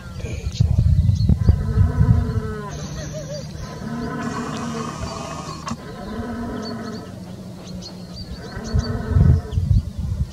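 Red deer stags roaring in the rut: several drawn-out calls of steady pitch, each a second or two long. Low rumbling on the microphone comes near the start and near the end.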